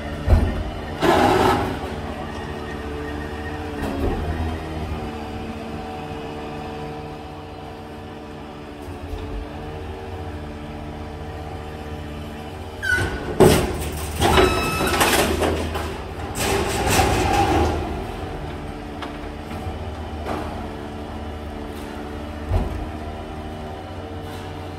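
Refuse truck's engine running steadily as its hydraulic crane lifts an underground waste container. From about 13 to 18 seconds in there is loud clattering and a brief high squeal as the container is emptied into the truck.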